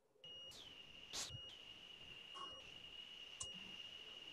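A faint, steady high-pitched whine comes in suddenly as a microphone on the call opens, over a low hiss. Two brief scuffs can be heard, about a second in and again near the end.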